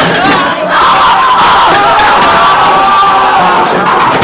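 A group of teenagers cheering and shouting together, loud and continuous.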